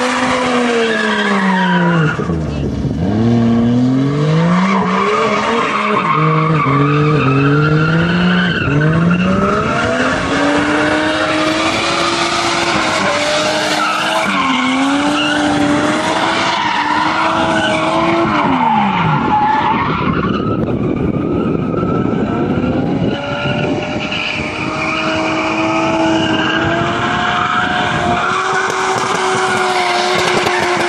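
A car drifting: its engine revs rise and fall again and again over the hiss and squeal of sliding, spinning tyres. Near the end the engine holds a steadier pitch.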